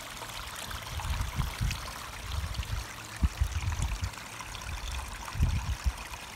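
Water running and trickling over the small ragstone falls of a garden pondless stream, a steady splashing with irregular low bumps on the microphone.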